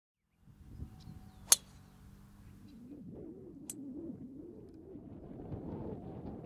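A golf club striking a ball: one sharp crack about a second and a half in, over faint outdoor ambience. A fainter, thin click follows near the four-second mark.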